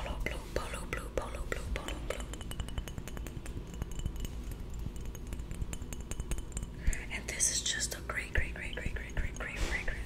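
Fingers tapping rapidly on a glass Ralph Lauren Polo cologne bottle, a quick run of light glassy clicks. Soft whispering comes in near the end.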